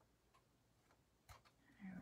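Near silence with a few faint clicks: small scissors snipping paper as pieces are trimmed to length.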